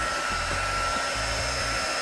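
Heaterizer XL-3000 single-speed heat gun running: a steady rush of blown air with a thin, steady high whine.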